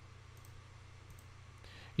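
A few faint computer mouse clicks over a low, steady hum.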